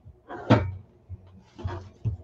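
A single sharp knock or thump on a tabletop about half a second in, then a softer bump near the end, from a hand and a playing kitten scuffling on a desktop cutting mat.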